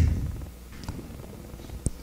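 Quiet room tone from a handheld microphone with a faint low hum, after the end of a spoken "um" fades out; one faint click shortly before the end.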